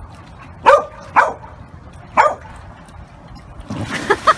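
A large dog barking three times, two quick barks and then a third about a second later. Near the end comes a splash of water.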